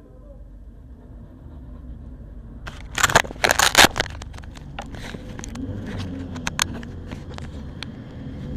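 A cluster of loud knocks, rustling and crackle right at the microphone begins about three seconds in, as a mechanic leans over the open cockpit of a single-seater race car and handles it. Scattered single clicks follow, over a low steady rumble.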